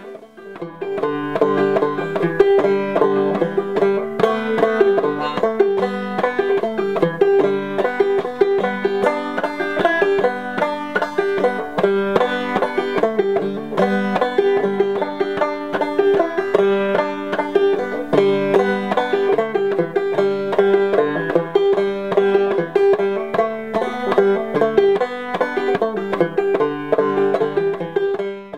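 Open-back banjo playing an old-time tune solo: a steady, unbroken run of plucked notes, with one high note sounding again and again through it.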